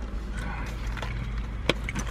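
Low steady hum in a car cabin with light handling noise and one sharp click near the end, as a paper-wrapped burger is moved about.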